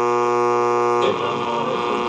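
Music with a held, distorted electric guitar chord playing through the speakers of a Panasonic RX-5090 boombox.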